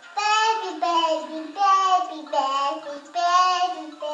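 A young child's high voice singing in a sing-song, five drawn-out notes one after another, each sliding down in pitch.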